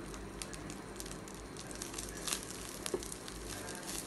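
Coriander seeds and curry leaves frying in a little oil in a nonstick pan over low heat: a faint sizzle with scattered small crackles and ticks, a couple of them sharper in the middle.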